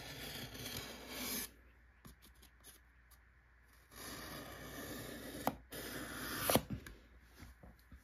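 Pencil tip drawn along a scored seam in painted foam board, a faint scraping rub that re-deepens the slab lines of a mock concrete floor. Two strokes, one at the start lasting about a second and a half and another from about four seconds in, with a couple of sharp clicks near the end of the second.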